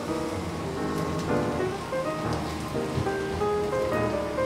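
Fries sizzling in hot burger grease inside a closed flip waffle maker, heard under background music.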